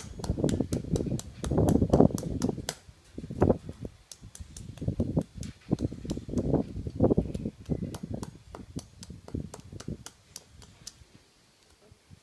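Rapid, irregular light hammer taps chipping at broken plaster of Paris mould pieces on a concrete floor, with the plaster crunching; the mould is being broken apart because the polystyrene cast stuck to it. The taps thin out and stop near the end.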